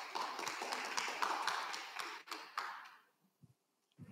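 Applause from a small audience: many overlapping hand claps, dying away about three seconds in.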